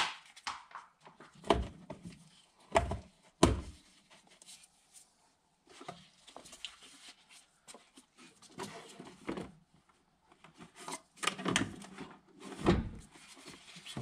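Plastic air filter housing and rubber intake boot of a VW T3 being handled and fitted in the engine bay: irregular hollow knocks and thuds with rustling in between. The knocks bunch up around the first few seconds and again about three-quarters of the way through.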